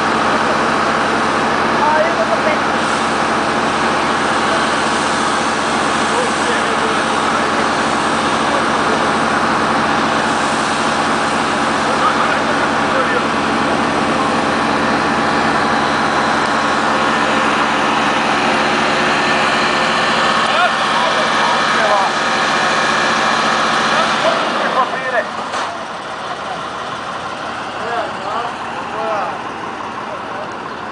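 Fire pump engine running steadily at a constant speed, then shutting off about 24 seconds in.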